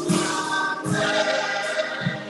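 Church choir singing a gospel song with instruments playing along; a sharp chord hits about a second in.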